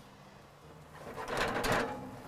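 Oven door opened and a metal oven rack rattling as it is slid out, a rapid clattering starting about a second in.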